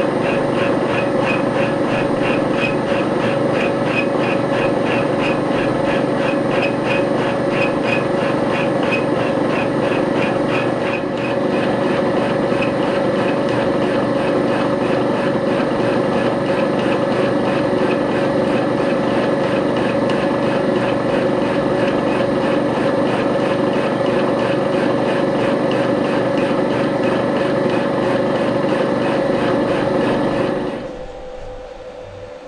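Vertical milling machine running, its spinning end mill cutting the ends of a stack of 6 mm flat bars: a steady machine tone with an even, rapid pulsing of the cutter over it.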